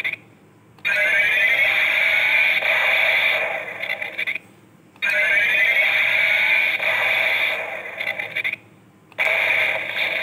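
DX Ixa Driver toy belt playing an electronic standby loop through its small speaker, lit by its red light. The loop repeats about every four seconds with a short break between repeats, and each repeat opens with a rising whine.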